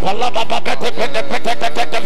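Loud church worship music: a voice over fast, evenly spaced percussion beats.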